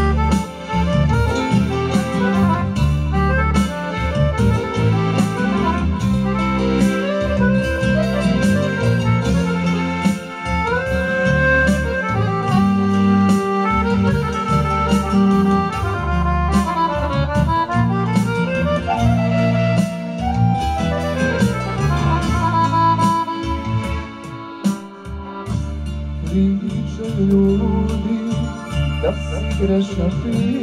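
Instrumental introduction of a Serbian folk (narodnjačka) song played live on accordion and keyboard, over a steady beat and bass line.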